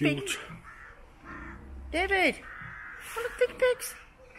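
A loud animal call about two seconds in, rising then falling in pitch, followed near the end by a few short, harsh calls.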